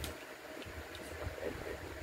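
Low, uneven background rumble and faint hiss of room tone, with one sharp click at the very start.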